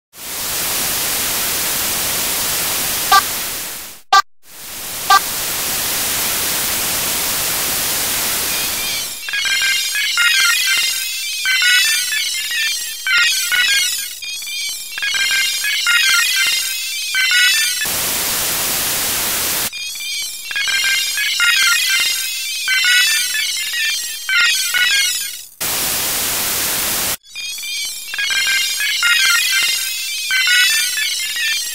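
Steady static hiss for about the first nine seconds, then rapid, high electronic beeping and chirping. It is broken twice more by short bursts of static.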